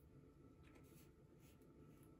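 Near silence: room tone with a few faint, brief rustles from a toothpaste tube and toothbrush being handled.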